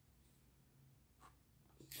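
Near silence: room tone with a faint steady low hum and two faint short clicks near the second half.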